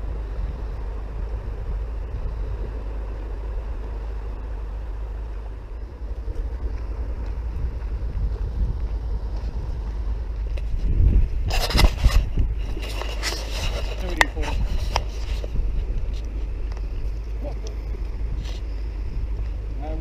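Wind buffeting the microphone with a steady low rumble. About eleven seconds in come a few seconds of sharp clicks and knocks close to the microphone, from handling of the landed fish and its lip-grip tool.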